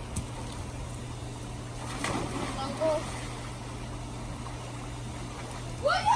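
Outdoor swimming pool with people in the water: faint water sounds and distant voices over a steady low hum, with a voice rising near the end.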